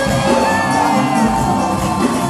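Live church praise music with singers leading, under a crowd's cheers and whoops.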